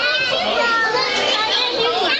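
A crowd of children talking and calling out at once: dense overlapping chatter with high-pitched excited voices.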